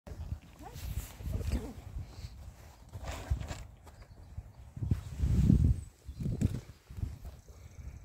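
Wind buffeting and handling noise on a phone microphone as it is swung round and set against a wooden fence, heard as uneven low rumbles, loudest about five seconds in.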